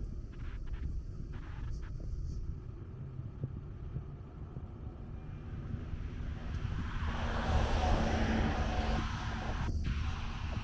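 Street traffic: a motor vehicle passes close by, its engine and tyre noise building about seven seconds in and easing off near the end, over a steady low rumble.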